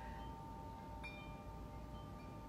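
Faint, steady chime-like ringing tones, with a single light tick about a second in.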